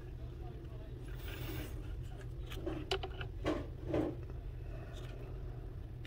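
Quiet hand-work noises while epoxy is poured into a boat's stuffing tube: a few soft scrapes and knocks about three to four seconds in, over a steady low hum.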